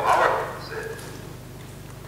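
Speech only: a lecturer's voice relayed over a video call through room loudspeakers, trailing off in the first half second, then a pause over a steady low hum.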